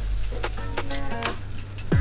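A pancake sizzling in a frying pan under background music, with a few short clicks.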